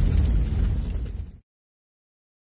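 A loud, deep rumble with no clear pitch. It fades and then cuts off abruptly about a second and a half in.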